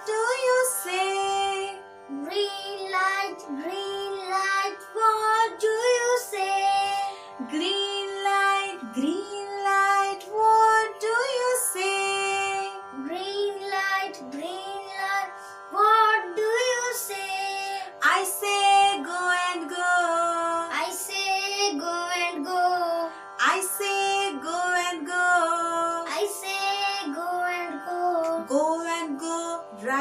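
A woman and a young boy singing a children's traffic-lights song together, with steady instrumental backing.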